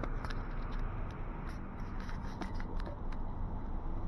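Outdoor street ambience: a steady low rumble with a scatter of light, irregular clicks and scrapes, most of them in the first three seconds.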